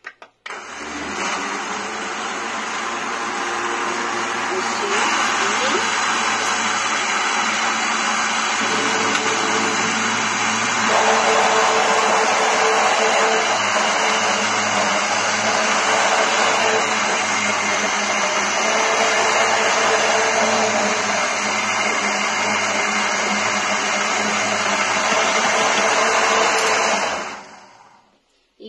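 Countertop electric blender running, mixing instant yeast into a creamy liquid bread batter. It starts just after the beginning, gets louder in two steps, a few seconds in and again about ten seconds in, then holds steady until it is switched off shortly before the end.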